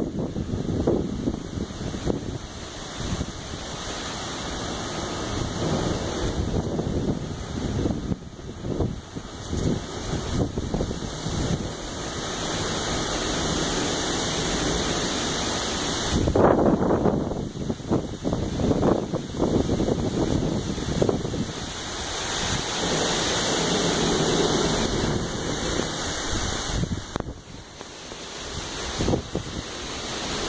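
Heavy storm rain pouring down with gusting wind buffeting the microphone, swelling and easing in surges.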